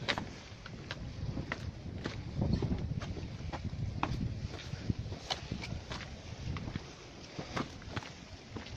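Footsteps on a dirt and stone path, sharp steps about two a second, over a low rumble.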